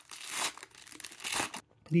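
Thin paper wrapper around a stack of trading cards crinkling and tearing as it is pulled open, in two rustles, the second about a second and a half in.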